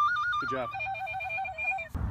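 Tin whistle played in a fast trill, warbling rapidly between two high notes, then dropping to a lower trill for about a second. A man says a short 'good job' between the two trills.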